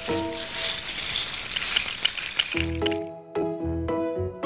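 Music of an animated logo sting: short pitched notes, then a hissing swell that lasts about three seconds, after which the plucked-sounding notes return.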